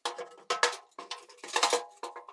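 Steel charcoal basket clanking and scraping against the smoker's steel firebox as it is handled, a series of sharp metal knocks with a brief ring, loudest about half a second in and again near the end.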